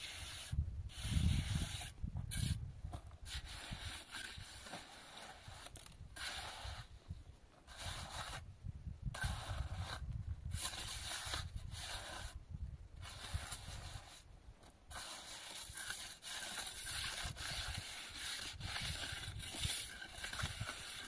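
Hand trowel scraping and smoothing plaster along a roof edge, in repeated strokes of about one to two seconds with short pauses between them.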